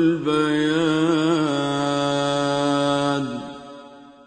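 A single voice chanting in long held notes with a wavering pitch, fading out over the last second.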